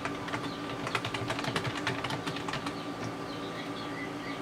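Rapid light clicks of keys on a computer keyboard for about two and a half seconds, thinning out to a few scattered clicks.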